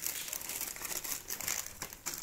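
Plastic packaging crinkling irregularly as it is handled: a clear plastic bag of helmet accessories and the bubble wrap around the helmet being rummaged and picked up.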